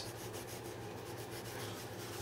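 Faint scratching of a pen on a sheet of paper as lines are marked on a printed graph, over a low steady hum.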